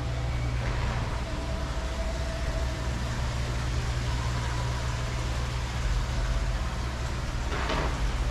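Steady low outdoor rumble, with faint thin tones above it and a short hiss near the end.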